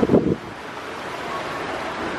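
Wind buffets the microphone in a short low rumble at the start, then a steady rush of splashing water from small fountain jets in a shallow pool.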